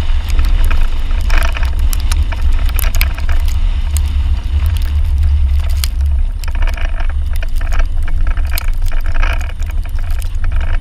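Mercedes-Benz GLS front tyre rolling over ice and packed snow, with a heavy low rumble of wind and road noise on a body-mounted camera and dense crackling and crunching from the snow and ice under the tread.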